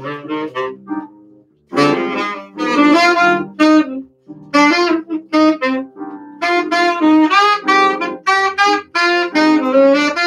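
Saxophone playing jazz melody phrases over electric piano chords, with a short break in the line just after a second in.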